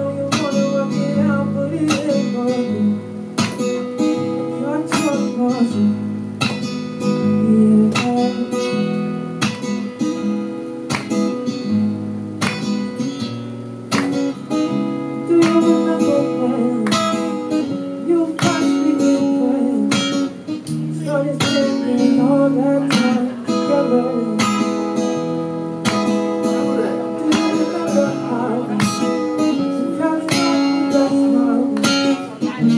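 Acoustic guitar strummed in a steady rhythm, the chords changing every second or so, in an instrumental passage.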